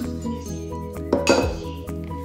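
A stainless steel mixing bowl clinks and scrapes against a plastic bowl in a short clatter about a second in, as beaten egg whites are tipped out of it. Background music plays throughout.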